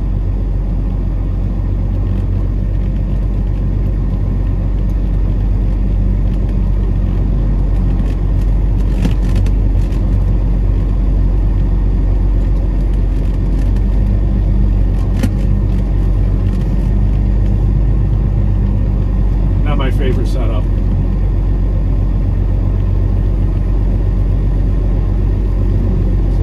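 Peterbilt 389 semi truck's diesel engine running at low speed as the truck creeps along, a steady low drone heard from inside the cab, with a few faint clicks.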